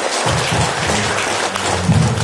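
Audience applauding, a dense steady clapping, with music playing underneath.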